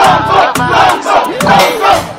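A crowd chanting a short slogan over and over, about two shouts a second, with a low steady tone underneath.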